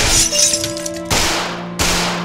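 Staged handgun fire and shattering glass over dramatic score music. A dense breaking-glass crash fills the first second, then two sharp bangs come about a second in and just before the end.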